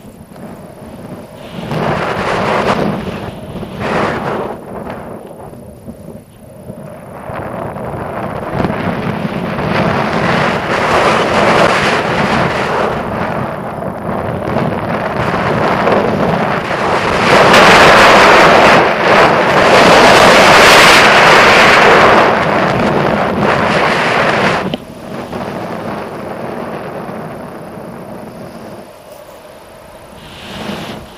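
Wind rushing and buffeting over an action camera's microphone on a selfie pole in paraglider flight, rising and falling in gusts. It is loudest for several seconds in the second half and drops off suddenly near the end.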